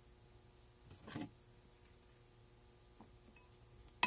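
Near silence: quiet room tone, with one brief faint rustle about a second in.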